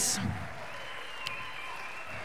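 Audience applause in a large hall, strongest in the first half-second and then carrying on more softly.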